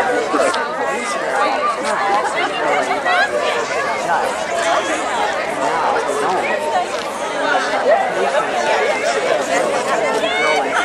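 Crowd of children and adults chattering and calling out, many voices overlapping with no single speaker standing out.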